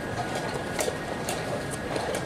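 Scattered sharp clicks of wooden chess pieces being set down and chess clock buttons being pressed across several boards as opening moves are played, about four in two seconds. Under them run a steady murmur of the playing hall and a faint steady high tone.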